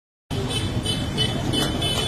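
Busy street noise with road traffic, and music playing in the background.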